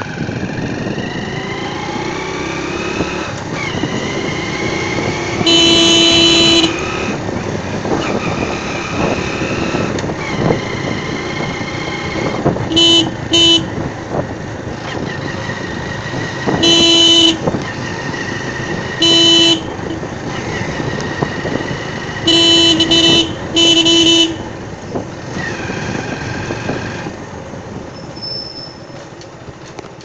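A vehicle horn honking about eight times, one long blast and then short ones in pairs and threes, the loudest sound throughout. Under it a small engine runs, rising in pitch and changing gear as the vehicle moves.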